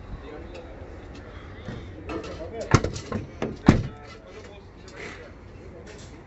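Several sharp knocks in quick succession around the middle, the two loudest about a second apart, over faint background voices.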